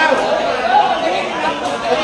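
Spectators' chatter: many voices talking at once, steady throughout, in a large covered hall.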